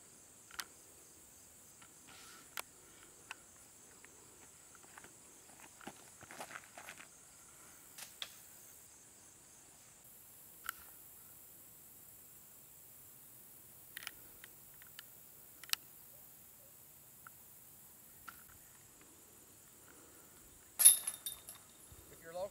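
Steady high insect chirring, like crickets, with scattered small clicks and rustles. About a second before the end comes a sharp, loud clash with a bright metallic ring: the chains of a disc golf basket struck by a disc.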